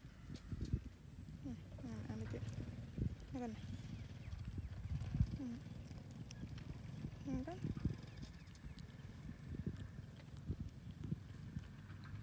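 A baby macaque giving several short, pitched coos, each bending down and back up, every couple of seconds, over low handling noise with light clicks from fingers working the lotus seeds.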